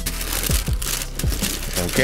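Tissue paper crinkling and rustling as hands fold it back in a sneaker box, with background music underneath.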